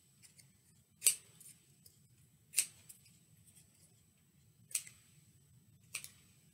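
Scissors snipping paper: four separate cuts, about one every second and a half.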